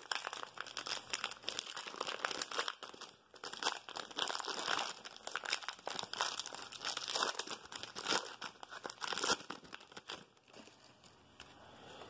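A 2020 Donruss baseball card pack's wrapper crinkling and tearing as it is opened by hand, a dense run of crackles and rustles for about ten seconds.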